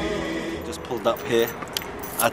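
Chanted background music fading out, then a man's voice beginning to speak, with a few light clicks.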